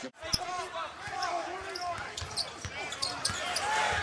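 Live basketball game sound in an arena: a ball being dribbled on the hardwood court and short sneaker squeaks over steady crowd murmur.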